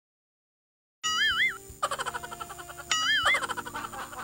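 Sound drops out completely for about a second, then background music comes in with a wobbling, cartoon-like "boing" sound effect that plays twice.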